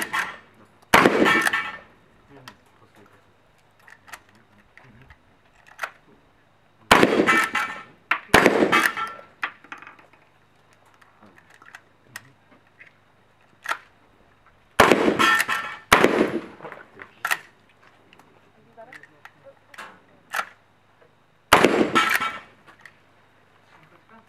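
Shotgun fired at steel knockdown targets: six loud shots, mostly in pairs about a second apart with pauses of about six seconds between pairs, each ringing off briefly as the steel plates are hit. Smaller clicks and knocks come between the shots.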